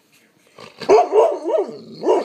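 Bernese mountain dog 'talking' back: a drawn-out bark-howl whose pitch wavers up and down for about a second starting partway in, then a second short call at the very end.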